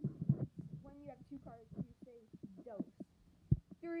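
Quiet children's voices talking, with a single low thump about three and a half seconds in. A child starts a race countdown at the very end.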